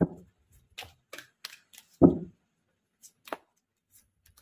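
Tarot cards being shuffled and handled by hand: a run of short, crisp card clicks and flicks, with two soft thumps, the louder about two seconds in, as the deck or a card meets the cloth-covered table.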